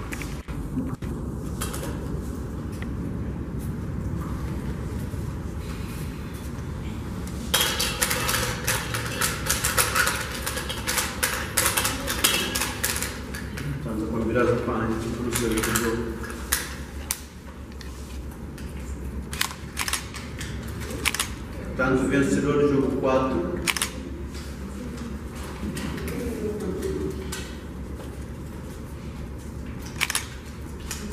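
Plastic draw balls being handled in a glass bowl. Sharp clicks and knocks of plastic on plastic and glass start about a few seconds in as the balls are stirred and picked out and the capsules are twisted open, with low voices talking now and then.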